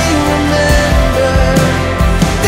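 A live band playing an instrumental passage of a slow worship song, with electric guitar over a steady bass.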